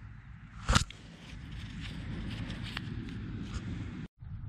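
Handling and movement noise over grass: one sharp knock just under a second in, then steady low rustling and scraping with a few faint ticks.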